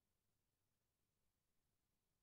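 Near silence: only a very faint, even hiss at the recording's noise floor.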